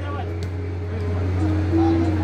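Voices calling out across a football pitch, one long call held from about one and a half seconds in, over a steady low hum. A single short knock about half a second in.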